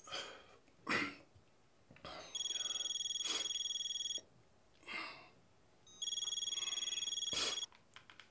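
Mobile phone ringing twice, an electronic ring with a fast, even flutter lasting about two seconds each time, with short breaths from a man before and between the rings.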